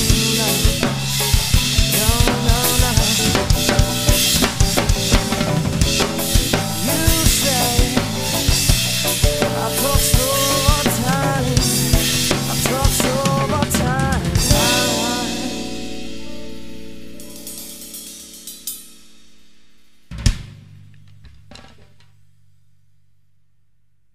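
Acoustic drum kit played over a rock backing track with guitar and bass: a busy beat of kick, snare and cymbals until about 14 to 15 seconds in, when the band stops and the last chord rings out. A few more hits follow, one loud hit about 20 seconds in, and then the sound dies away.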